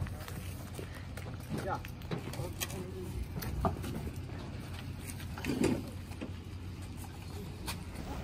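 Faint voices of several people talking at a distance over a steady low rumble, with a few light clicks and knocks.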